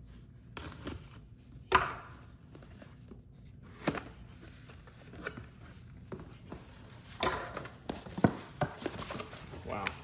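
A pocket knife cutting through the seams of a paperboard retail box and the box being pulled open and unfolded: scattered sharp snaps, clicks and light thumps of card, the loudest about two seconds in and a cluster between seven and nine seconds.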